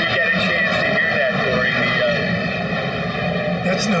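Fighter jet flying low overhead, a steady engine sound heard under voices.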